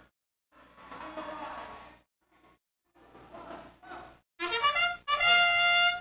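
The field's match-start signal sounds: two blasts of a steady chord of several held tones. The first is short, starting about four and a half seconds in, and the second is longer, beginning about half a second later. Before it there is only faint arena crowd noise, with stretches of near silence.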